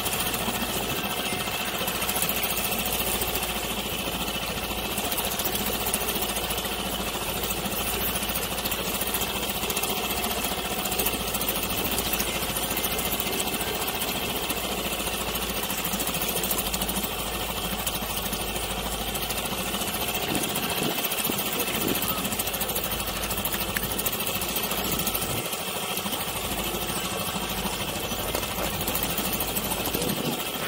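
Small outboard motor running steadily.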